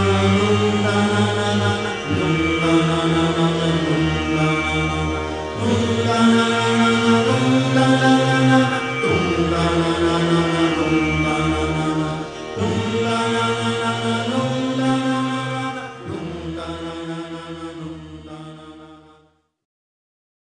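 Chanted mantra over music: long held vocal phrases that change every three to four seconds, fading out near the end.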